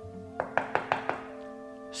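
About five quick knocks on a door, a radio-play sound effect, over soft sustained background music.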